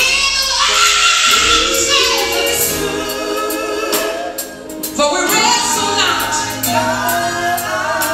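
Live gospel singing by a three-woman vocal group, backed by a band with electric bass and drums.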